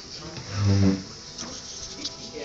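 A person's short, low hum like an "mm", lasting about half a second and starting about half a second in.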